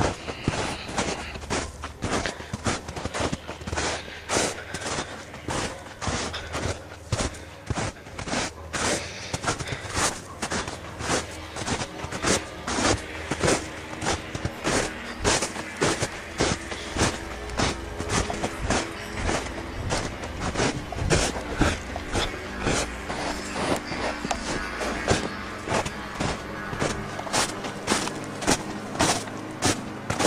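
Footsteps crunching through snow at a steady walking pace, about two steps a second.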